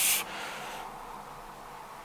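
A man's heavy breathing through the nose: a loud sniff ends just after the start, followed by fainter, breathy noise.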